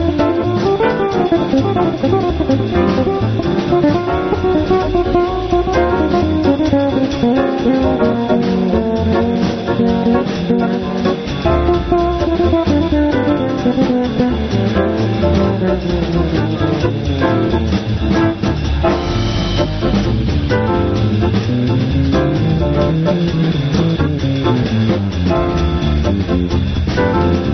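Electric bass playing a melodic jazz line at a steady level, with a drum kit keeping time behind it.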